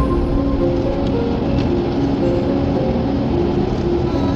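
Steady road and tyre noise heard inside a car driving on a wet road, with background piano music playing over it.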